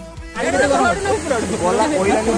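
Background music ends, and about a third of a second in, close voices start talking over a steady rushing hiss of water pouring over a dam weir.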